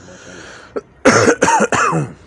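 A man coughing: about a second in, a fit of about three harsh coughs in quick succession.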